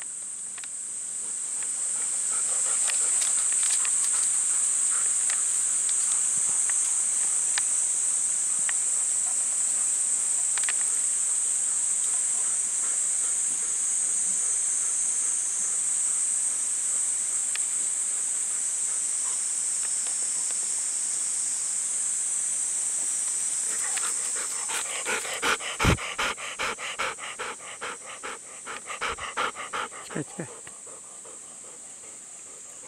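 Golden retriever panting in quick, rhythmic breaths, loudest in the last few seconds as the dog comes right up to the microphone, with one sharp thump among them. Underneath runs a steady, high-pitched drone of summer insects.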